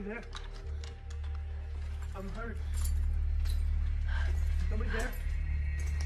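Film soundtrack: a low steady drone under brief, wordless voice sounds, about four short ones, with scattered sharp clicks and metallic jingles.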